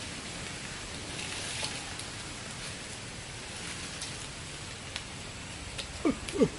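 Steady, even outdoor hiss with a few faint ticks and rustles.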